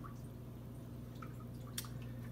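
Aquarium water faintly trickling and dripping, with a few small, brief drip sounds, over a steady low hum.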